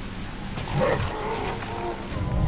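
A hairy, ape-like film monster roaring: a loud burst starting about half a second in that carries on as a held, pitched cry toward the end, over a steady low hum.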